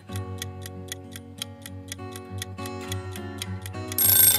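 Countdown clock sound effect: fast, even ticking over soft background music with held notes.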